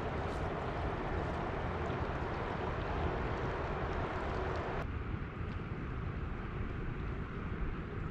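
Outdoor wind and river noise: a steady low rumble of wind on the microphone with the rush of moving river water. The higher hiss drops away suddenly about five seconds in.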